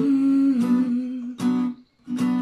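Acoustic guitar strummed in three strokes, with a woman humming a held note along with it; the sound drops out briefly near the end.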